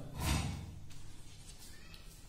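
Chalk on a blackboard: a short scraping stroke just after the start, then two faint taps as a small arrow is drawn.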